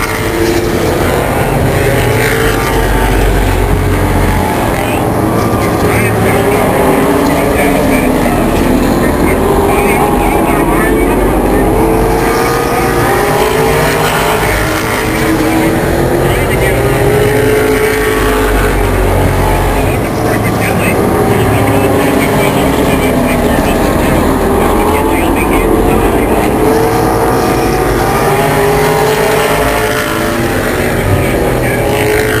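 A pack of late model stock cars' V8 engines running hard around a short oval, loud and continuous. Several engine notes rise and fall every few seconds as the cars circle the track.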